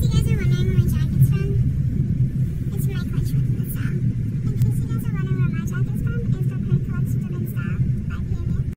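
Steady low rumble of a car's cabin while riding, with a voice speaking over it at times.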